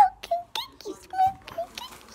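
A high-pitched, squeaky voice making a string of short wordless syllables, about three a second, each bending up or down in pitch.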